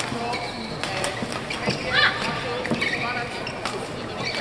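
A badminton rally: several sharp racket strikes on the shuttlecock and high squeaks of players' shoes on the court mat, over a background of crowd voices.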